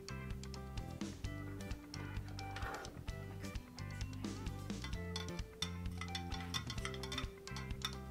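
Soft background music with held chords, and a metal spoon clinking again and again against a drinking glass as it stirs food coloring into water.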